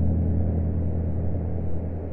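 Ambient music: a low, sustained organ-like chord held and slowly fading under a faint haze of record surface noise, from a slowed, looped sample of an old ballroom record.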